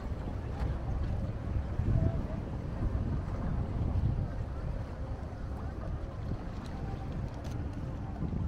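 Wind buffeting the microphone: a low, uneven rumble that swells in gusts, over harbour ambience with faint distant voices.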